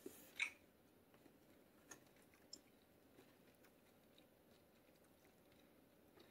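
Mostly near silence, with a short rustle about half a second in and a few faint clicks after it, from cardboard jigsaw puzzle pieces being handled on a wooden table.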